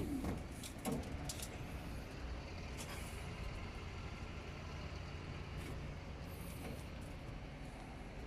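Hino J05E-TG four-cylinder turbo diesel engine idling with a steady low rumble, with a couple of short knocks in the first second or so.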